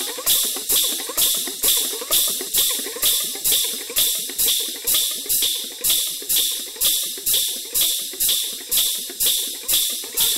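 Folk percussion accompaniment for a Dhuduki dance, playing a steady beat of crisp, bright strokes about two to three a second, with no singing.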